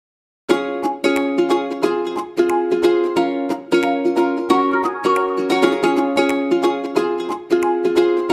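Background instrumental music, a plucked-string tune in the manner of a ukulele with quick, evenly repeated notes. It cuts in suddenly about half a second in, after a brief silence.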